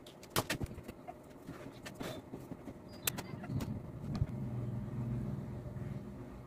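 Sharp plastic clicks from a finger-prick lancing device as a lancet is loaded and the device is cocked and fired, a few clicks over the first three seconds. In the second half a low steady drone comes in, the loudest sound in the stretch.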